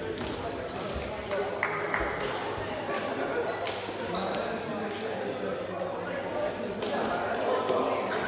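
Voices echoing in a large sports hall. Over them come scattered sharp knocks and thuds, and a few brief high squeaks.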